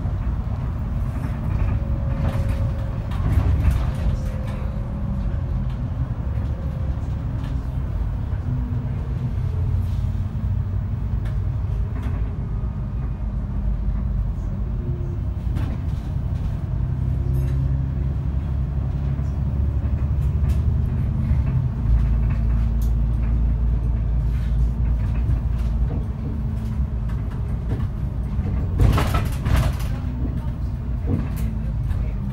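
Onboard a VDL DB300 Wright Gemini 2 double-decker bus under way: the diesel engine's low drone, its note rising and falling with the bus's speed, with interior rattles. A brief loud hiss near the end.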